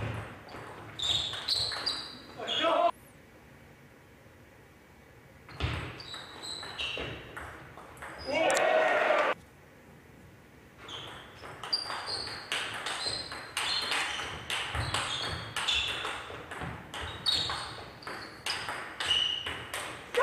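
Table tennis rallies: a plastic ball pinging sharply off rubber bats and the table. One long rally runs at about two hits a second. Loud shouts break out as points end.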